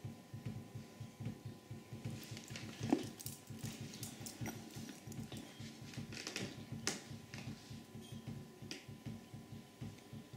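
Fast, steady patter of water drops falling from the nozzles of a falling-water generator into its catch containers. Scattered sharp clicks come between about two and seven seconds in, the loudest about three seconds in.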